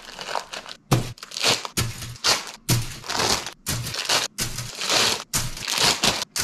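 Thin plastic bag of Bandai model-kit runners crinkling loudly in a string of short, irregular bursts as it is worked open and handled, beginning about a second in.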